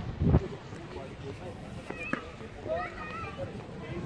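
Indistinct voices of people talking outdoors, with a short gust of wind buffeting the microphone right at the start.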